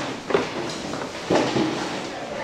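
Classroom desks being slid and dragged across the floor, scraping, with a sharp knock about a third of a second in and another bump just past a second in.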